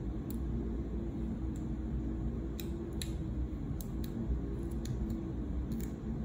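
Small, irregular clicks and ticks of paper being handled and lifted off a glass candle jar, over a steady low background hum.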